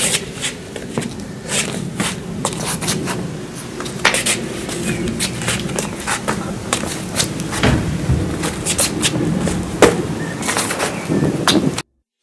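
Feet stepping and scuffing on flagstone paving, with irregular sharp knocks and slaps as two people drill low kicks and shin stops. The sound cuts off suddenly just before the end.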